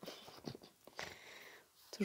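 Faint soft swishes and light taps of a deck of large oracle cards being spread out in a row across a cloth.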